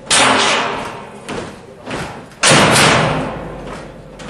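Two loud sudden impacts, one just after the start and one about two and a half seconds in, each with a long fading, echoing tail, and two smaller knocks between them.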